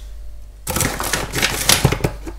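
Large plastic pouch of protein powder crinkling and rustling as it is handled and opened, a dense run of rapid crackles starting just under a second in.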